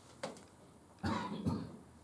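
A man coughs to clear his throat: two quick coughs about a second in, with a short, fainter sound just before them.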